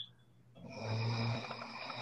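A person snoring: one drawn-out, low snore that starts about half a second in, is loudest around the one-second mark, then fades.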